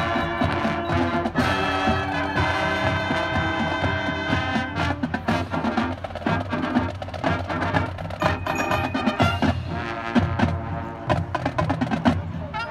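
High school marching band playing the opening of a military service-song medley: held brass and woodwind chords over drums and percussion strikes, the percussion growing busier about halfway through.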